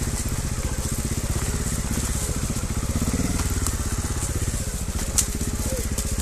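Trials motorcycle engine running steadily at low revs, an even rapid putter, as the bike creeps over rocks. A single sharp click about five seconds in.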